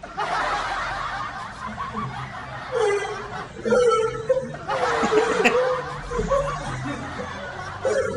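Snickering laughter in bursts over background music.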